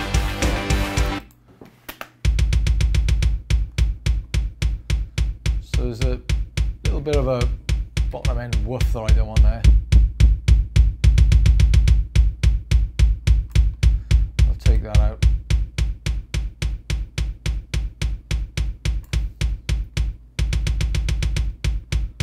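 Programmed sample kick drum played back from a Cubase session in rapid, evenly spaced hits, heavy in the low end, while its channel EQ boosts the bottom around 77 Hz toward a tight kick sound. The full mix with guitar stops about a second in, and the kick starts alone about a second later.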